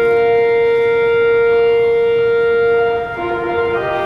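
Pipe organ holding a loud sustained chord, one bright middle note standing out, then moving to a new chord near the end.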